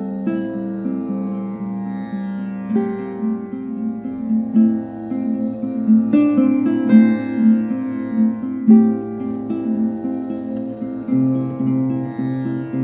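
Slow meditative music: melodic plucked harp notes over a sustained tambura drone, a new note sounding every second or so, with a lower bass note coming in near the end.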